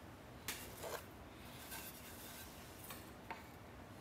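Faint knocks and rubbing of wooden two-by-six boards being set down and shifted into place on plywood spacers: two light knocks about half a second and a second in, and a small click a little after three seconds, over quiet room tone.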